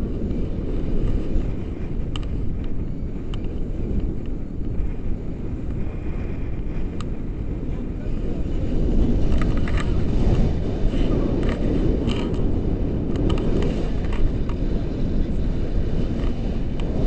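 Wind rushing over the microphone of a camera carried in flight on a tandem paraglider: a steady low rumble that grows a little stronger about nine seconds in.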